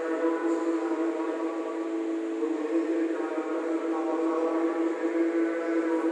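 A man's voice chanting a prayer into a microphone, sung on a steady reciting tone that holds its pitch for long stretches and steps to a new note now and then.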